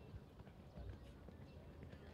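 Faint hoofbeats of a horse cantering on an arena's sand footing.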